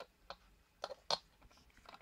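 A few faint clicks from a jumper wire being handled and pushed into the pin header of an Arduino Uno.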